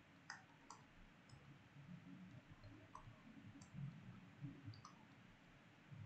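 Near silence with a few faint, scattered clicks from the pen input used to handwrite digits on a computer whiteboard.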